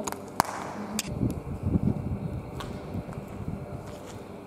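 Footsteps and movement noise of people walking across a gritty concrete floor, with a few sharp clicks near the start and a rough, uneven rumble of steps and handling in the middle.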